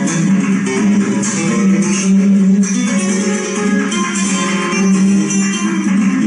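Flamenco guitar playing a continuous passage of strummed chords and plucked notes in a steady rhythm, heard as playback of a video recording.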